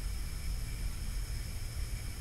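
Steady background hiss with a low hum, with no distinct handling clicks.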